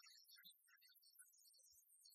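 Near silence, with only faint scattered blips of sound.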